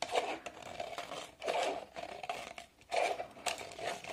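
Scissors cutting through the thin plastic of a PET bottle to trim its cut edge: several separate snips, each with a crinkle of the plastic.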